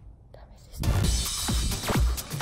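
A brief quiet lull, then electronic dance background music cuts in suddenly a little under a second in, with a steady kick-drum beat of about two strikes a second.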